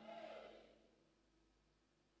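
Near silence: room tone, with the faint tail of a woman's voice through a microphone dying away in the first half second.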